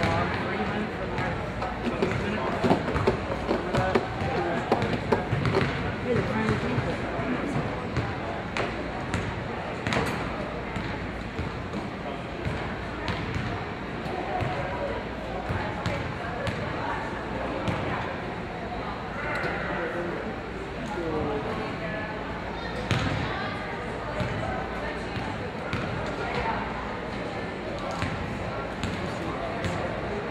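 Indistinct crowd chatter in a gymnasium, with basketballs bouncing on the hardwood floor as sharp, echoing thuds, most frequent in the first third.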